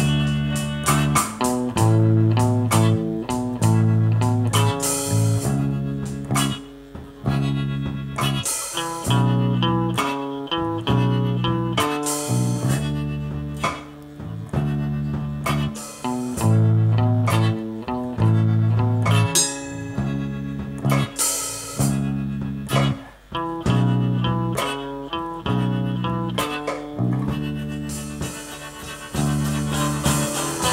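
Instrumental band music: a guitar and bass guitar line moving in steady steps over drums with cymbals, with no singing.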